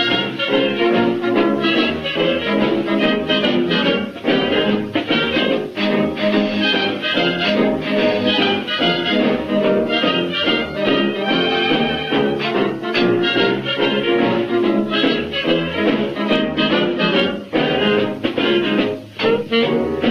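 Instrumental break of a vintage jazz dance-band record, with brass instruments leading over the band and no singing.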